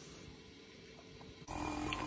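Quiet room tone, then about a second and a half in an abrupt switch to the low, steady noise of a lidded saucepan of water boiling on the hob, with a few small clicks.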